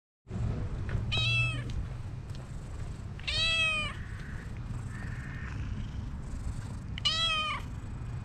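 A calico cat meowing three times: short meows a couple of seconds apart.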